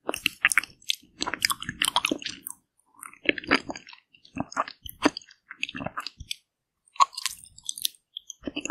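Close-miked biting and chewing of a caramel ice cream bar: the frozen coating crackles and crunches in short clusters of clicks, with brief pauses between bites and a longer quiet gap about three quarters of the way through.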